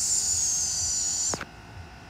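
A steady high-pitched hiss with a faint, slowly falling whistle in it, cutting off suddenly about one and a half seconds in, leaving a faint low hum.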